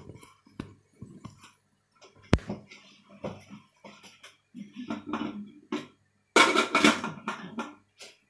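Scattered small knocks and clicks of handling in a kitchen, with one sharp click about two seconds in and a louder burst of noise about six and a half seconds in.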